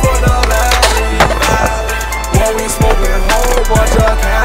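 Hip hop beat with a deep bass that slides down in pitch, over skateboard sounds: wheels rolling on concrete and a few sharp board clacks, the clearest about a second in and again about halfway through.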